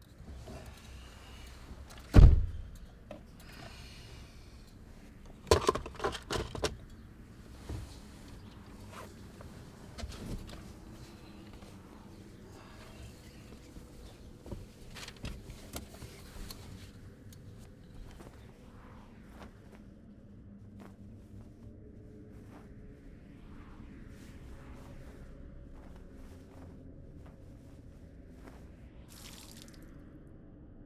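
A heavy thump about two seconds in, then a quick run of knocks a few seconds later, followed by scattered small knocks and rustles over a low steady hum, as of a car door shutting and someone moving about inside a car.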